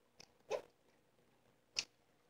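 Lego plastic pieces clicking and knocking as the model is handled: a faint click, a short soft knock about half a second in, and a sharper click near the end, with near silence between.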